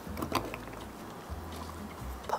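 Faint rustling and a few soft clicks of hands folding damp cheesecloth over soft tofu curds in a plastic tofu press.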